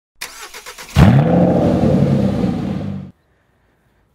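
A car engine being cranked by its starter in a quick run of ticks, then catching with a rising rev about a second in. It runs loud and steady and cuts off abruptly about three seconds in.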